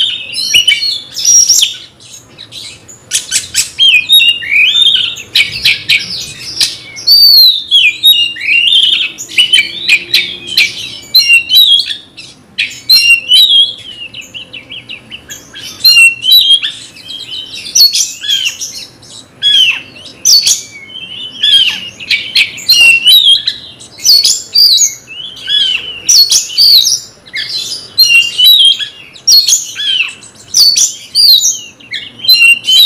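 Caged oriental magpie-robin (kacer) singing loudly and almost without pause: quick, varied whistled phrases that swoop up and down, mixed with fast chattering notes, broken by a couple of short lulls. This is the full-throated song that keepers call 'nembak', given here as if against a rival.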